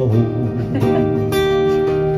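Guitar strumming a slow chord accompaniment, the chords ringing on and restruck a few times.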